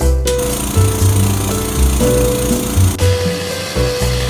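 Electric belt sander switched on briefly: its motor and belt run with a loud, steady whir starting just after the beginning and cutting off suddenly about three seconds in, over background music.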